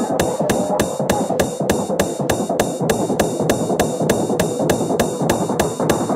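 Uptempo hardcore electronic music: a fast, even percussion beat of about three hits a second over a dense synth texture.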